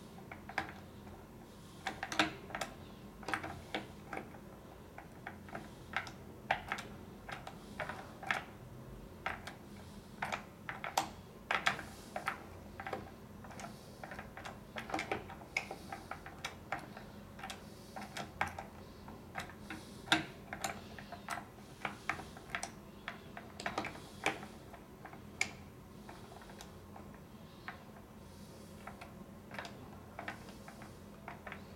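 Light, irregular metallic clicks and taps of a thin metal pin being worked against and into a glass patch door lock's metal case, spread unevenly throughout, with short busier spells.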